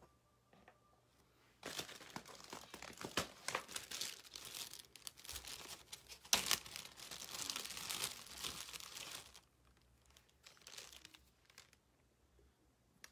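Hands handling small plastic parts: a stretch of crinkling and rustling with light clicks, starting about a second and a half in and stopping about nine seconds in.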